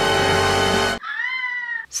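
Loud music stops abruptly about halfway through, followed by a single drawn-out cat meow that rises and then falls in pitch.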